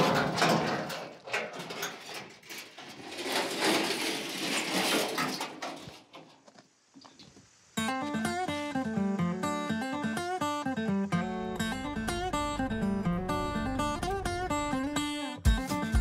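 Scraping, rustling noise as a sheet of corrugated iron is handled and set back among scrub, then a short quiet. A little before halfway through, plucked acoustic guitar music begins and plays on.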